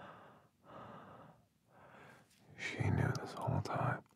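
A man breathing heavily close to the microphone, a few breathy breaths about a second apart, then a louder voiced exhale or gasp with small clicks in the last second or so.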